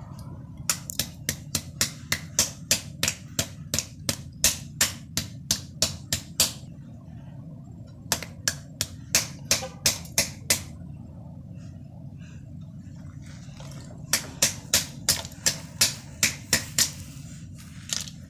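Hammer striking a lump of ice to break it open, about three quick blows a second, in three runs with pauses between.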